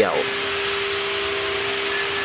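A machine running steadily, a constant whining hum over an even hiss, with a power-tool character.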